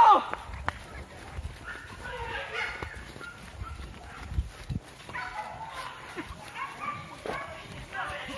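Hunting dogs barking and yelping in short bursts while chasing a wild boar, with men's distant shouts among them. There are thudding footfalls of someone running through grass.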